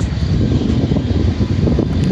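Wind buffeting the microphone: a loud, irregular low rumble.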